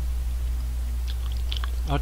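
A man chewing a spoonful of curry, with a few small soft mouth clicks about a second in, over a steady low hum. He starts to speak just before the end.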